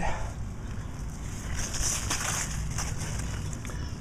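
Leaves rustling and brushing close to the microphone, with low handling rumble, as they are pushed aside; irregular, with the rustling loudest about halfway through.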